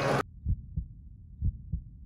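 Loud contest background noise cuts off abruptly a quarter second in, followed by a heartbeat sound effect: deep double thumps, lub-dub, about one pair per second.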